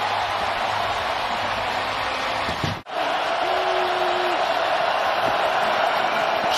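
Stadium crowd cheering a home-team touchdown, a steady wall of noise that breaks off for an instant about halfway through and then carries on.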